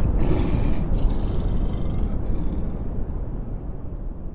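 Tail of a cinematic logo-intro sound effect: a low rumble after an impact, fading away steadily, its higher part dying out first.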